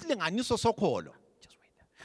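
Speech only: a man's voice for about a second, then a short pause.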